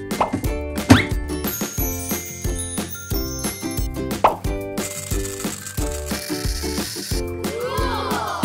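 Upbeat children's background music with a steady beat, with two quick rising "bloop" sound effects. About five seconds in comes a hiss lasting about two seconds, whipped cream being sprayed from an aerosol can.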